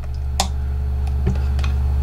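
Multimeter probe tips clicking against a laptop charger's connector pins, one sharp click and a few fainter ones, while the meter gives no continuity beep: the data wire in the charger cable has no continuity. A steady low hum runs underneath.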